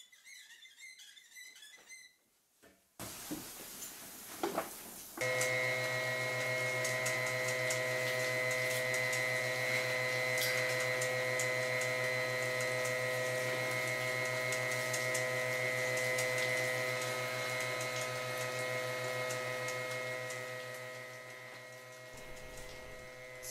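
A motorised seed-tray conveyor running with a steady hum, while water sprays from an overhead bar onto trays of sprouted rice seed passing beneath: the trays being showered with strong acidic electrolyzed water to disinfect them. The machine comes in about five seconds in, after a few quiet seconds, and fades away near the end.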